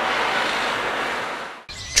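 A steady rushing noise that fades away about a second and a half in.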